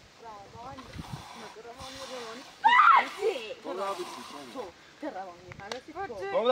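People talking back and forth, with one voice louder about three seconds in.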